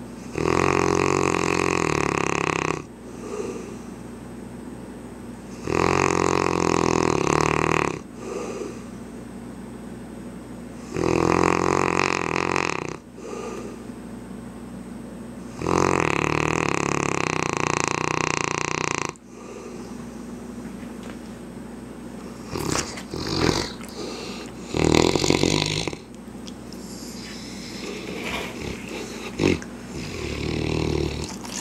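A sleeping mastiff snoring: four long snores of two to three seconds each, about five seconds apart. In the last third come several shorter, irregular sounds as the dog stirs.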